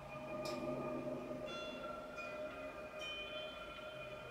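Ambient electric guitar played through an effects-pedal rig: layered sustained tones, with new higher notes coming in about a second and a half and again about three seconds in.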